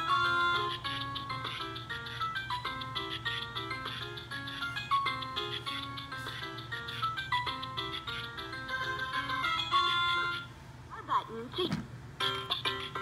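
LeapFrog Learn & Groove Color Play Drum toy playing its electronic salsa song through its small speaker: a bright, stepped melody over a steady rhythmic beat. About ten seconds in the tune stops and a sound effect falling in pitch follows.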